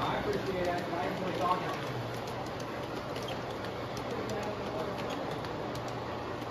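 Indistinct chatter of people in the room over a G scale model train rolling past on the track, with a steady low hum and light clicking from the wheels.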